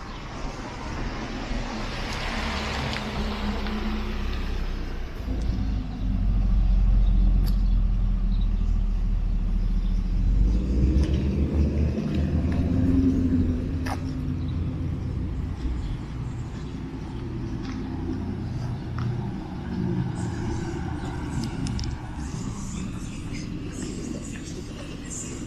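Street traffic: cars passing on a town street. One car's tyre noise swells and fades in the first few seconds, then a heavy low rumble builds from about six to eleven seconds before settling into a steadier traffic background.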